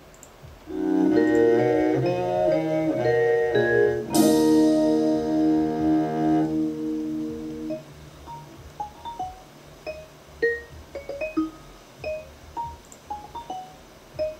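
A 1970s jazz-rock recording: loud sustained ensemble chords that change every half second or so, hit with a strong accent about four seconds in and held, fading out by about eight seconds. Sparse single vibraphone notes follow, struck one at a time and ringing briefly.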